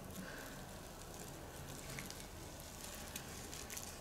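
Faint crinkling and rustling as a small soft plastic pot is squeezed and a moss-wrapped orchid root ball is worked out of it, with a few tiny ticks.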